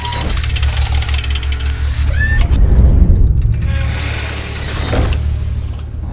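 Cinematic logo-intro music and sound design: a deep, steady bass drone under glitchy electronic clicks and a rising sweep, swelling to its loudest about three seconds in.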